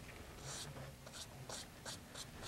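Fan brush loaded with white oil paint brushed across the canvas in a few short, faint scratchy strokes.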